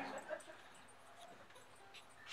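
Quiet room tone as a man's voice trails off at the start, with one faint short sound about a third of a second in.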